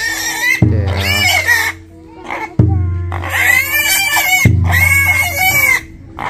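A black pig squealing in long, loud screams, about four in a row with short breaks, as two men hold it down and tie it.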